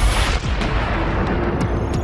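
Film background score over a city montage: a sudden booming hit at the start that fades over about half a second, a deep rumble underneath, and a held tone coming in about a second later.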